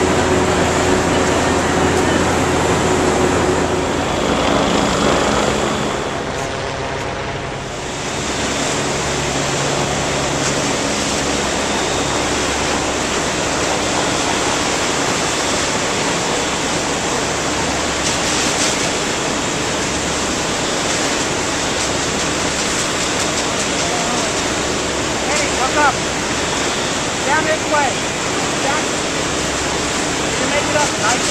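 Steady rushing noise of fire-fighting water streams and running fire-apparatus engines and pumps. A low engine hum is plain for the first few seconds.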